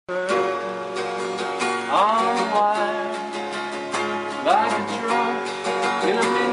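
Acoustic guitar strummed steadily while a man sings a slow folk song, his voice sliding between notes twice.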